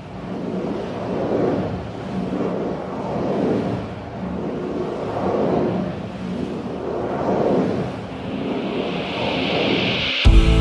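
A rushing, surf-like noise that swells and fades about every two seconds, with a hiss rising near the end: a whooshing sound effect under the intro graphics.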